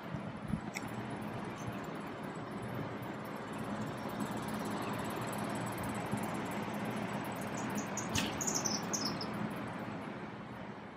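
Steady outdoor background hiss with a faint low hum. Just after eight seconds in, a small bird gives a quick run of high chirps that step downward.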